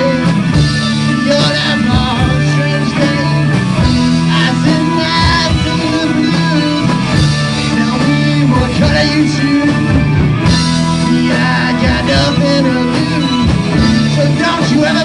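Live rock band playing loud: distorted electric guitars over bass and a steady drum kit, with a guitar line bending and wavering above.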